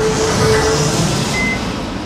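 Jet airliner taking off, a loud steady rushing engine noise that eases off toward the end, with a held low tone during the first second.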